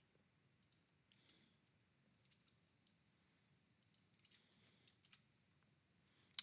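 Near silence: faint room tone with a few scattered, faint clicks of a computer mouse.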